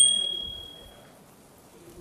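A single bright bell 'ding', the notification-bell sound effect of a subscribe-button animation, struck once at the start and ringing away over about a second.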